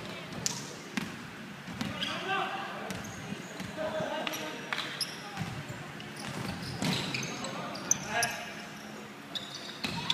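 Basketball game on a wooden indoor court: the ball bouncing on the floor, with sharp knocks scattered throughout, and players' voices calling out to each other in a large gym hall.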